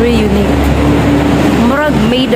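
A person's voice in held, then gliding tones, without clear words, over a steady low rumble.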